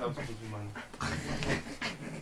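People roughhousing on the floor: scuffling, a few knocks and heavy, panting breaths, with faint voices.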